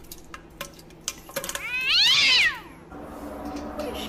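A single meow, rising and then falling in pitch, about two seconds in, with a few faint clicks before it.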